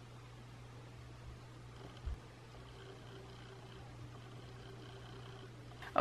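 Quiet room tone: a steady low hum, with a brief low thump about two seconds in.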